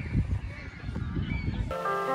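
Uneven low rumble of outdoor noise on a phone's microphone, with a faint short call about a second and a half in. Background music with sustained notes starts near the end.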